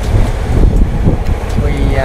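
Wind rumbling on the microphone aboard a catamaran: a loud, low, gusty noise that swells and dips throughout.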